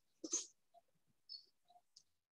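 Near silence on a video call: one short vocal sound at the start, then a few faint ticks.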